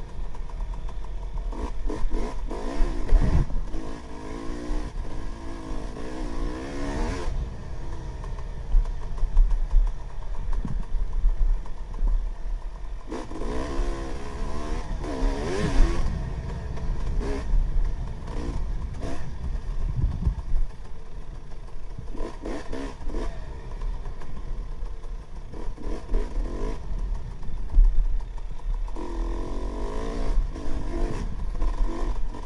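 KTM XC-W 300 two-stroke single-cylinder dirt bike engine revving up and down under way, the pitch climbing and falling several times as the throttle is worked. Knocks and clatter from the bike over rough trail ground.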